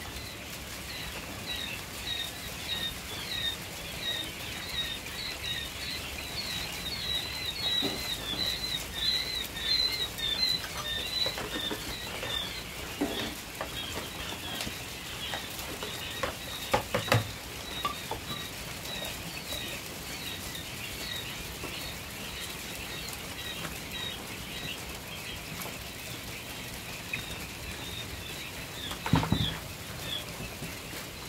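A brood of day-old quail chicks peeping without pause, many short high chirps each second, busiest around ten seconds in. A few knocks and clatters from a plastic feed tray and bowl cut in midway and near the end.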